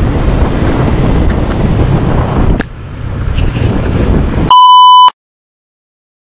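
A scooter riding through traffic, heard as wind rushing over the camera microphone with a low engine rumble, on a Honda Click 125i; a click about two and a half seconds in, after which it goes somewhat quieter. Near the end a loud, steady electronic beep lasts about half a second, and the sound then cuts off abruptly.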